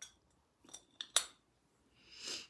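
Tarot cards being handled as a card is drawn: a few short, crisp snaps and clicks close together near the middle, the last one the loudest.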